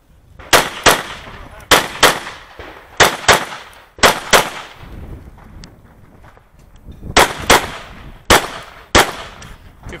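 A 9mm Smith & Wesson M&P Pro pistol fired in quick double-taps: about twelve shots in six pairs, the shots in each pair about a third of a second apart, with a pause of about three seconds midway.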